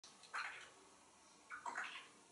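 An African grey parrot making two faint, short hissing sounds about a second apart.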